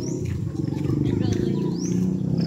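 Crowd of schoolchildren chattering and shouting all at once, many voices overlapping, getting louder in the first second.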